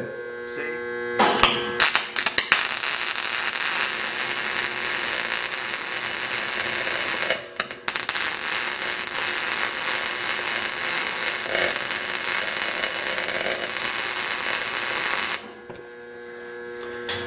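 MIG welding arc on a steel pipe coupon: a steady, loud hiss that starts with a few stuttering strikes between one and two seconds in. It breaks off briefly near the middle and stops shortly before the end.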